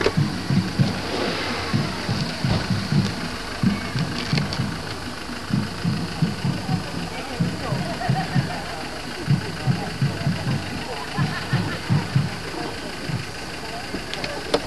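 Footsteps and handling bumps on a handheld microphone carried at a walk: irregular low thumps roughly two a second over a steady outdoor background.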